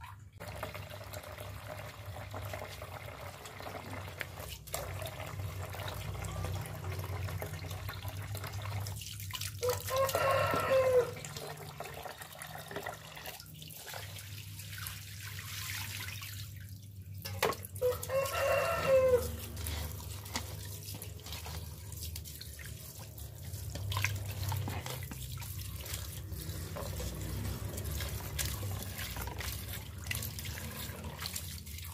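Tap water running steadily into a metal pot of cut fern greens while a hand swishes and rinses them. A rooster crows twice in the background, about ten seconds in and again near eighteen seconds.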